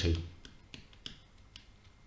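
About four light, sharp clicks at uneven intervals from a pointing device as handwriting is added on a computer screen, heard just after a voice trails off.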